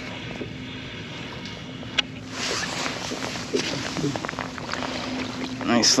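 Spinning reel winding in line, then water splashing as a small tautog (blackfish) thrashes at the surface beside the kayak. A single sharp click comes about two seconds in, and the splashing and ticking grow louder from there.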